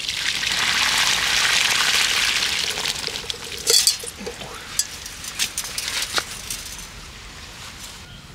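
Water poured from an aluminium pot through a wire-mesh strainer, splashing onto concrete: the cooking water drained off parboiled chicken wings. The splashing is loud at first and thins out after about three seconds. Scattered clinks and soft knocks follow as the wings are tipped into the strainer.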